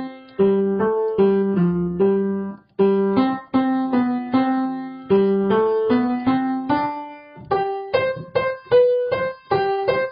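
Piano playing the accompaniment and part lines of a choral anthem as a rehearsal track: a melody moving in short struck notes over chords, each note dying away, with a couple of brief breaks between phrases.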